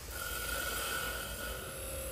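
Hi-Tech Diamond wet trim saw's diamond blade cutting through a rock, a steady whine that begins just after the start.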